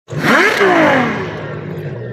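Channel-intro sound effect of an engine revving and sweeping past: its pitch climbs sharply for about half a second, then falls away as it passes.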